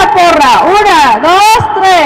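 Children's voices shouting a team cheer, loud, with long drawn-out syllables that rise and fall in pitch.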